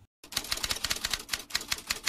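Typing sound effect: a rapid run of typewriter-like key clicks that starts a moment in and stops suddenly just after the end.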